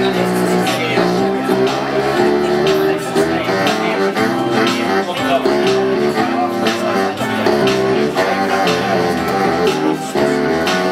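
Live music played in a small room, with a plucked guitar among the instruments, running without a break.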